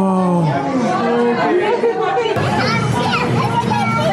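People talking, with children's voices among them. A little past halfway the sound changes abruptly to a busier hubbub of chatter.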